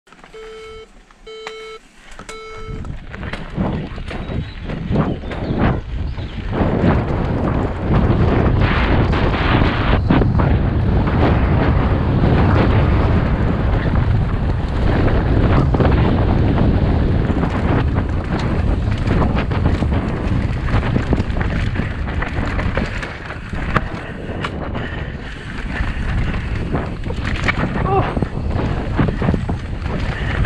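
A start-gate timing beeper sounds three short beeps about a second apart. Then a mountain bike sets off down a dirt trail at speed: loud, continuous wind noise on the on-board microphone, with the rumble and rattle of the tyres and bike over the ground.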